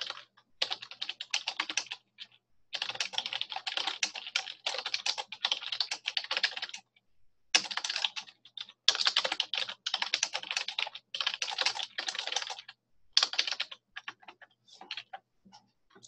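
Computer keyboard typing in quick bursts of key clicks, with short pauses between runs.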